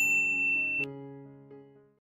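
Notification-bell sound effect from a subscribe animation: one bright ding that rings for just under a second and cuts off suddenly, over soft background music that fades out toward the end.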